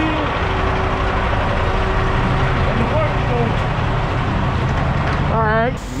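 Semi truck's diesel engine idling close by: a loud, steady low rumble that holds throughout, with brief voice fragments over it.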